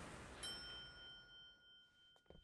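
Elevator arrival chime from the anime soundtrack, faint: a single bell-like ding about half a second in that rings on and fades, after a soft hiss.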